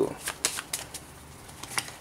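A tarot deck being handled by hand, with a scattering of short, light card clicks as the deck is cut and a card is drawn and turned over.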